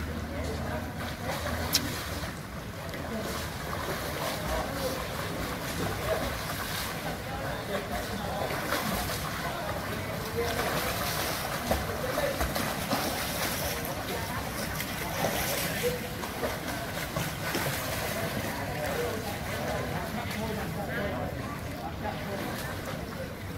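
Swimmers splashing and kicking in a pool, a steady wash of churned water, with indistinct voices in the background.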